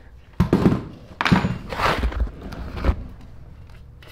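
A mini bike's rear fender thunking and clattering as it is worked loose and pulled off: about five knocks in the first three seconds, then quieter handling noise.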